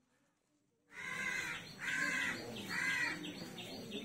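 A crow cawing three times, harsh calls under a second apart, starting about a second in, with smaller birds chirping faintly behind.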